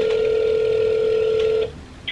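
Telephone ringback tone through a phone's speakerphone while the outgoing call rings: one steady, level ring that cuts off shortly before the call is answered.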